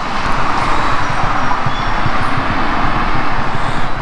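Road traffic passing on a busy multi-lane avenue: a steady rush of car tyres and engines, a little louder through the middle.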